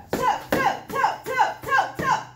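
Foam pool noodle striking a person's blocking forearms over and over in a fast high-middle-low blocking drill: about five quick whaps in two seconds, each trailed by a short falling tone.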